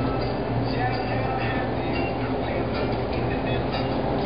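Steady rumbling background noise with a low hum, and faint voices over it.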